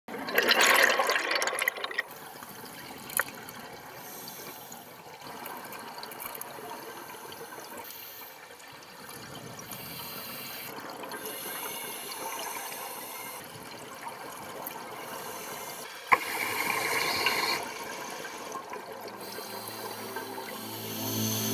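Underwater recording of a scuba diver's exhaled bubbles: a loud gush of bubbles in the first two seconds and another about sixteen seconds in, over a steady underwater hiss.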